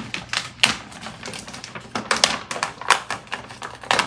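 A paper gift bag and the paper inside it rustling and crinkling as a present is pulled out: a run of irregular sharp crackles.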